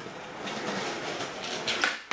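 Skateboard wheels rolling on a concrete floor, then a sharp pop of the tail striking the floor near the end as a flip trick is launched.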